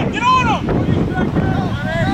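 Wind buffeting the microphone in a steady low rumble, with distant voices shouting across the field: one long shout in the first half-second and another near the end.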